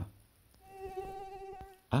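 Mosquito buzzing: a steady, high, thin whine lasting about a second, starting about half a second in.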